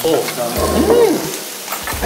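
Beef sizzling on a grill pan over a portable tabletop gas burner, a steady hiss of frying fat. About half a second in, a person gives one drawn-out exclamation that rises and falls in pitch.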